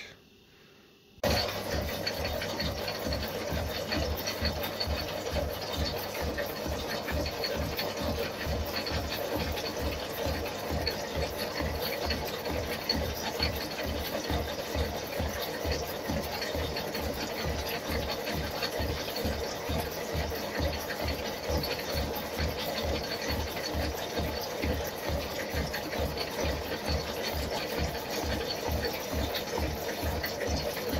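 Metal shaper running, its ram working back and forth with a steady rhythmic clatter as the tool cuts along the edge of a steel angle-iron block. It starts about a second in.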